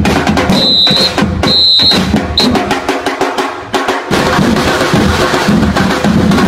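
Festival dance percussion music: a dense, loud drum beat with bass drum, broken in the first half by three high steady tones, two longer and one short. The bass drum drops out for about a second near the middle, then the full drumming comes back.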